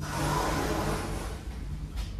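Hages glass passenger elevator starting its ride just after its door has shut: a rushing hiss that swells and fades over about a second and a half, above a steady low hum.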